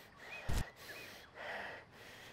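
A man breathing heavily through his open mouth, with a short, sharp gasp about half a second in and a softer breath about a second later. Faint bird chirps sound in the background.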